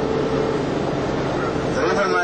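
Tour bus driving, heard from inside the passenger cabin: steady engine and road noise with a steady whine that fades about a third of the way in.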